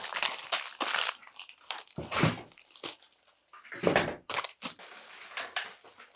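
Plastic packaging crinkling and rustling in a run of short crackles as tubes of foil cupcake liners are handled and packed back into their box.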